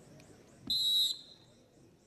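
Referee's whistle: one short, high-pitched blast a little under a second in, lasting under half a second.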